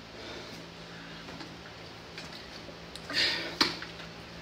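Quiet gym room tone with a steady low hum and a few faint ticks. About three seconds in come two short, louder rustling sounds close to the microphone.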